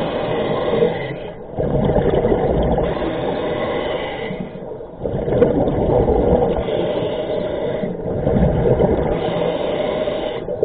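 Scuba regulator breathing heard underwater: a rush of exhaled bubbles and the hiss of inhaling in a steady cycle, with short lulls about every three seconds between breaths.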